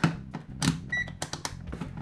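Rotary selector switch of an ANENG AN8203 pocket multimeter being turned through its positions, giving a quick run of detent clicks. The meter gives a short beep about halfway through.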